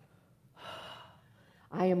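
A woman's audible breath in, about half a second long, after a faint click, taken in a pause before she goes on speaking.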